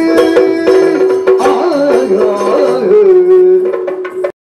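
Yakshagana background music: a sung melodic line held and bending over a steady drone, with maddale drum strokes and small cymbal clashes keeping the beat.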